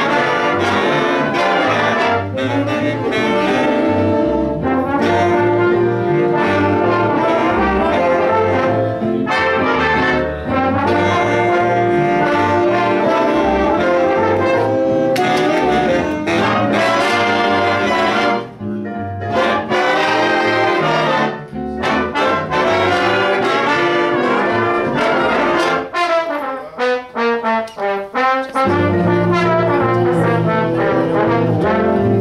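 A big band of saxophones, trumpets, trombones and piano playing a tune together, loud and continuous, with a few brief breaks in the full ensemble near the end.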